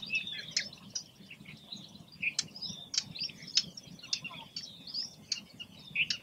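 Small birds chirping and twittering throughout, with a handful of short, sharp clicks at irregular intervals.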